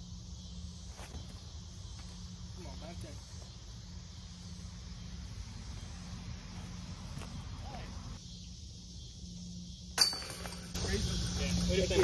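Quiet outdoor ambience: a steady high insect hiss over a low hum, with faint distant voices. About ten seconds in, a sudden sharp click, after which the background is louder.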